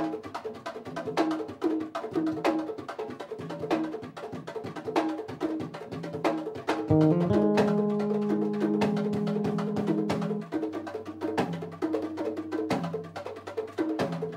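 Live Afro-Cuban percussion groove on congas, an even, steady run of hand-drum strokes. About seven seconds in, electric bass joins with long held low notes, then drops lower for the last few seconds.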